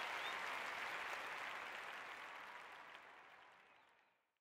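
A steady, even rushing noise, fading out gradually over a few seconds to silence.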